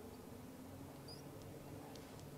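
Quiet ambience on the water: a faint, steady low hum, with two faint, short, high-pitched chirps from a small bird about a second in.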